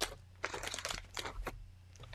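Clear plastic page protectors in a ring-binder scrapbook album crinkling and crackling as the pages are turned, with a sharp click at the start.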